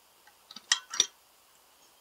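A few light metal clicks and clinks as a modified shift fork and its rod are dropped into place on the transmission shaft in an aluminium engine case, bunched together a little before the one-second mark, with the two loudest close together.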